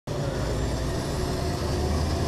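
Steady cockpit noise of a Hawker 800SP business jet: a low rumble under an even hiss of engine and airflow noise, with faint high whining tones.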